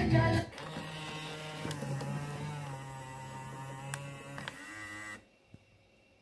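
Kenwood KDC-7060R car radio switched off and its motorised stealth face panel closing: the radio's music cuts off, then a small motor whirs steadily for about four and a half seconds with a few light clicks, stopping abruptly near the end, followed by one soft click.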